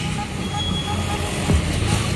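A motor vehicle engine running steadily at idle, a low even hum, with a single short thump about one and a half seconds in.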